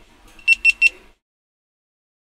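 Three short, high-pitched electronic beeps in quick succession, over a faint low hum.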